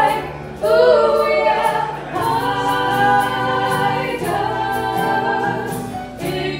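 Women's voices singing long held notes in harmony over acoustic guitar and keyboard, a live acoustic trio.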